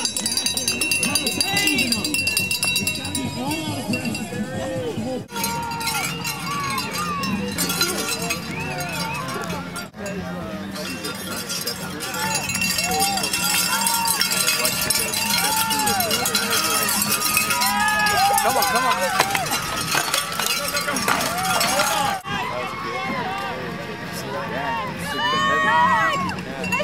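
Cyclocross spectators ringing cowbells and shouting encouragement as riders pass. The rapid clanging builds from about the middle and is loudest until shortly before the end.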